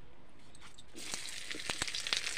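Sliced onions dropped into hot oil in a kadhai start to sizzle and crackle about a second in.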